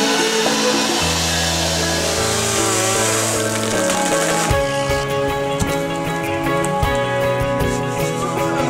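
Background music with held bass notes, changing to a regular beat about halfway through.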